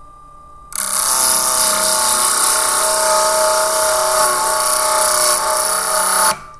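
Jooltool's spinning diamond grit disc grinding fired glass enamel on a metal pendant: a loud, steady grinding whine with hiss that starts suddenly under a second in, as the piece is pressed to the disc. Before that only the motor's faint running tone is heard.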